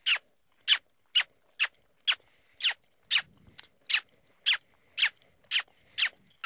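A person smooching: short kissing sounds made with the lips, repeated about twice a second, about a dozen in all. They are a voice cue urging a trotting horse to move up into the lope.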